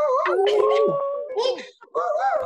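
People on a video call howling and woofing like wolves at once, in long held howls with one sliding down in pitch near the middle, dying away just before the end.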